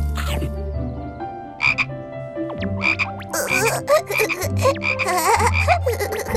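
Frog croaking as a cartoon sound effect: a few short croaks early, then a rapid run of croaks from about three seconds in.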